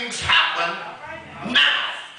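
A man's voice shouting short, high-pitched exclamations through a microphone and church PA, three bursts in quick succession, in the charged style of revival preaching.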